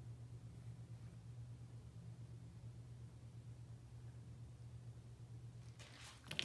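Near silence: room tone with a faint, steady low hum.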